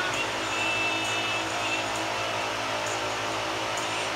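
Steady machine-like hum and hiss, with a brief faint high thin tone about half a second in.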